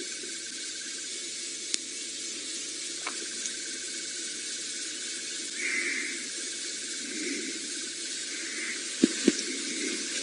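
Quiet bush ambience: an even, steady hiss with a few sharp clicks, the two loudest close together near the end.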